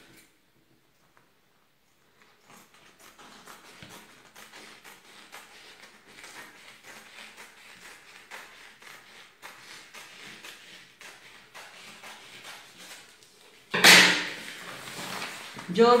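Scissors snipping through upholstery fabric: a long run of faint, irregular snips. Near the end a single loud thump, like a hard object knocked down on the table.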